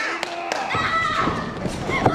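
Several dull thumps on a professional wrestling ring's canvas as wrestlers grapple and run. A woman's high-pitched shouting comes about a second in.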